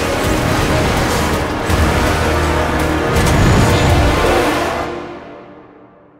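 Loud, dense trailer music mixed with vehicle and blast sound effects, loudest a little after three seconds in, then fading out over the last second and a half.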